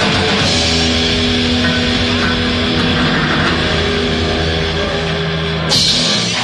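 Live rock band with distorted electric guitars, bass and drums holding a long sustained chord in the closing bars of a song, with a loud final crash just before the end.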